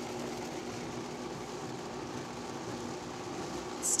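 Countertop blender running steadily on low speed, its motor humming as it purées cubed potatoes, warm stock and cheese into a thick soup.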